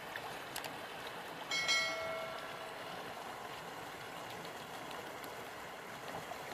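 Steady rush of river water running over rocks, with a brief high-pitched steady tone about one and a half seconds in that fades out after about a second.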